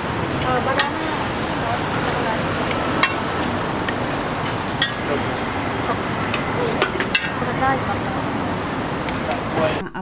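Banana-and-egg roti sizzling steadily in oil on a flat griddle. Metal and wooden spatulas click and scrape against the griddle several times as the dough is folded into a square parcel.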